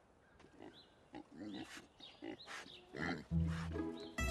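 A young pig grunting in a series of short bursts, with music coming in near the end.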